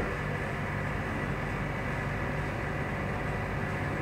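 Steady background hum and hiss with no distinct events: room noise, such as an air conditioner or fan, picked up by the recording microphone.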